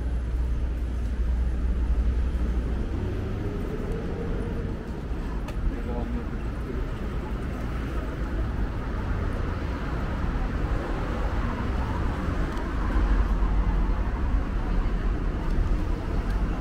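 City street traffic: cars passing on the road beside the sidewalk, a steady low rumble that grows louder near the end.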